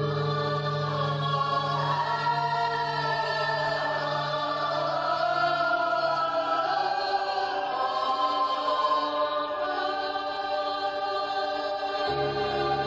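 Stage musical ensemble singing a sustained choral passage in several voices, with a held low note underneath that fades out about two-thirds of the way through.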